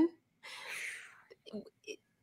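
A person's soft breathy exhale, with a few faint short vocal sounds just after it, all quiet.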